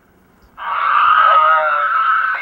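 A tinny, garbled voice over a two-way radio link, starting about half a second in, loud and squeezed into a narrow middle band of pitch with no low end.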